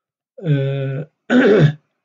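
A man's drawn-out hesitation sound, held at one steady pitch, then a short throat clearing near the end.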